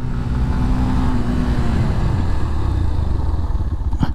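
Yamaha FZS V3 motorcycle's 149 cc single-cylinder engine running on the move, its note dropping about halfway through as the bike slows, with wind noise on the microphone.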